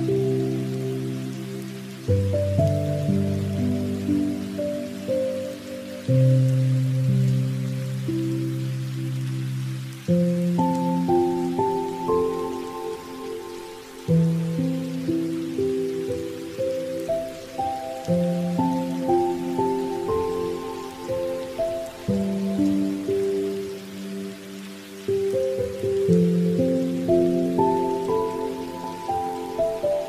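Gentle background music of struck keyboard notes, with a new chord about every two to four seconds that then fades, over a steady rain sound.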